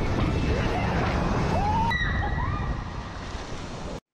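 Point-of-view ride noise on a wooden roller coaster: a heavy rush of wind on the microphone and rumble of the train on the track, with riders' yells rising in pitch. It eases somewhat over the last second or so and then cuts off abruptly.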